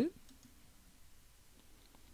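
Near-silent room tone with a faint computer mouse click as a menu item is selected.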